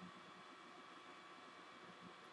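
Near silence: faint steady room hiss.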